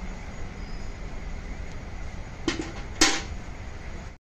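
Milk pouring from a steel pail into a metal milk can in a steady stream, then two sharp clanks about half a second apart, the second louder with a short ring.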